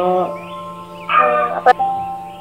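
Background music of held, sustained notes, with a short burst of voice just after a second in, followed by a brief click.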